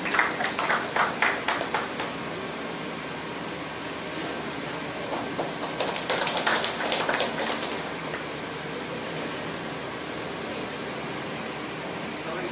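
A small group clapping by hand in two short bursts, one at the very start and one about six seconds in, over steady room noise.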